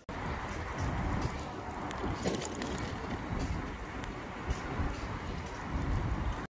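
Wind buffeting a moving phone microphone, a steady rumbling rush, mixed with bicycle tyres rolling along a paved path.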